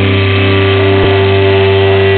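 Live heavy metal band holding a loud, sustained chord on distorted electric guitars and bass, with one drum hit about a second in.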